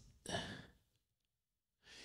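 A man sighs once, briefly, close to a microphone; a faint in-breath comes near the end.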